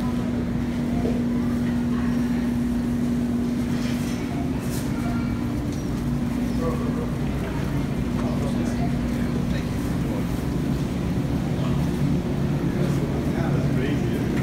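Steady low hum from a supermarket's open refrigerated display cases, one constant pitch under the general background noise of the store.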